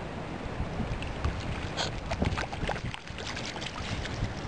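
Water splashing and sloshing as a miniature dachshund plays in it, a run of short splashes from about a second in, with wind rumble on the microphone.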